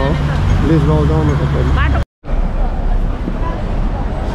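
Busy city street: steady traffic rumble with people's voices nearby, the sound cutting out for a moment about halfway through.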